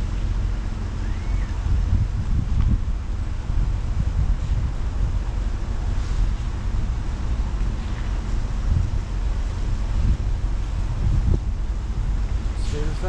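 Wind buffeting the microphone as a car drives along, giving an unsteady low rumble with road noise underneath.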